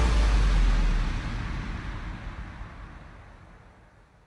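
A deep, low soundtrack rumble with a hiss over it, fading steadily away over about three seconds: the decaying tail of a cinematic boom or of the montage's music.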